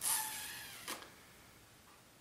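A person's faint breath in a pause between words, fading away within the first second, followed by near-silent room tone.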